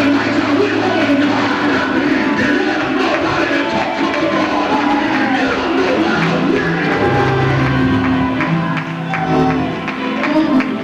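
Live church music with long held low notes, and voices singing and calling out over it.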